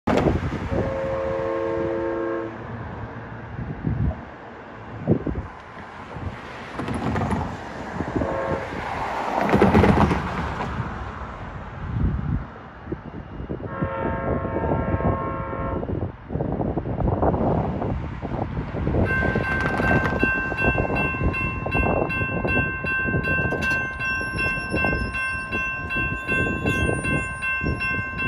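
An approaching Amtrak Pacific Surfliner train sounds its horn chord twice: a short blast near the start and a longer one about halfway through, over a steady rumble of traffic and the train. About two-thirds in, a grade crossing warning bell starts ringing steadily and keeps on.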